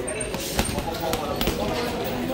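Boxing gloves punching a hanging heavy bag: a few dull thuds at uneven spacing, the sharpest about halfway through.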